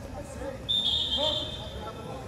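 A whistle blown once: a shrill, steady high tone that starts sharply a little under a second in and lasts about a second, over faint voices.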